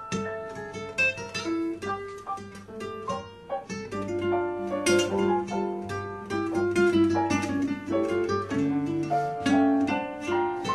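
Argentine tango played by a quintet of piano, bandoneon, guitar, violin and double bass, with plucked guitar notes to the fore over a walking bass line.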